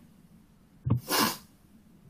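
A man's short, sharp breath noise at close range, just after a small mouth click, about a second in.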